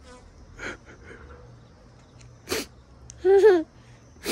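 A man's exaggerated crying: a few sharp, sobbing breaths, then a short wavering wail near the end.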